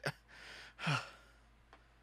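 A person sighing out a breath, then a short falling 'uh'.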